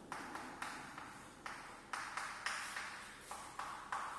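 Chalk writing on a blackboard: a quick, irregular run of short chalk taps and strokes, a few each second, each fading fast.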